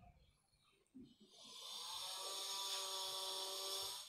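A steady hissing whistle, a pitched tone under a strong hiss, that swells in about a second in and holds.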